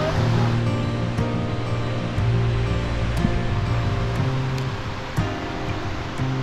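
Steady rush of a glacial meltwater river, heard under background music with held, sustained notes.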